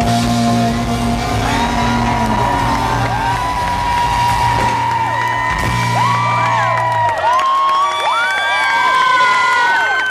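A live band's closing notes ringing out while the concert crowd cheers, whoops and whistles. The low sustained note stops about seven seconds in, leaving mostly the crowd's whistles and cheers.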